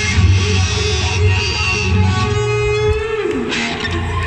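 Live rock band playing, with electric guitars over steady bass; a held note slides down in pitch about three seconds in.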